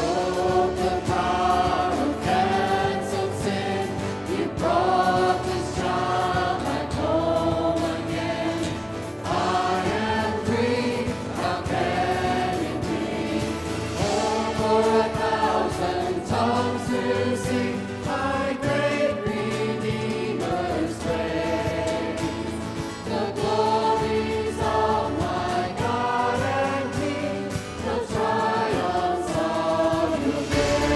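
Church worship song: a worship team and choir singing together, accompanied by electric guitar, in continuous sung phrases.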